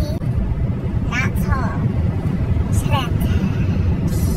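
Steady low rumble of a moving car heard from inside the cabin, with a few short bits of a woman's voice over it.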